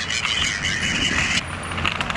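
Fire engine running at the scene, a steady low engine rumble with a high steady whine over it that cuts off about a second and a half in.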